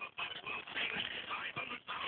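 Faint irregular rustling and handling noise as a shoe is moved about on fabric, over a low steady hiss.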